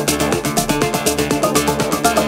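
Melodic techno DJ mix playing: a steady driving beat with fast, even hi-hat ticks, a repeating bass line and a synth melody.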